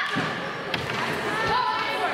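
Voices calling out across a gym during a basketball game, with two sharp knocks, one a little before halfway and one about three-quarters through.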